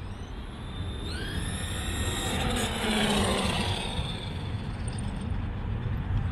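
Brushless electric RC car's motor and drivetrain whine, rising in pitch as it speeds up, loudest about three seconds in, then easing off. A steady low rumble lies under it.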